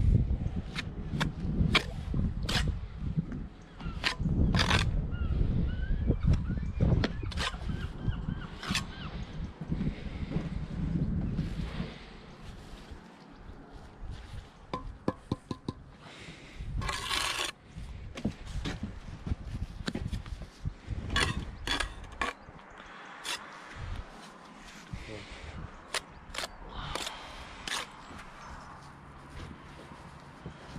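Bricklaying with a steel trowel: repeated sharp taps and knocks of the trowel and bricks, and trowel scraping through mortar as bricks are laid on edge along the top of a brick wall. A longer scrape comes a little past halfway; the first part is louder, with heavy handling rumble.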